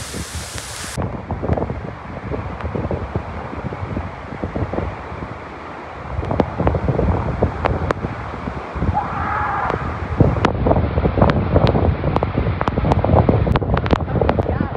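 Steady rush of a tall waterfall pounding into its pool, with wind buffeting the microphone in heavy gusts. From about the middle on, scattered sharp clicks and knocks sit over the noise.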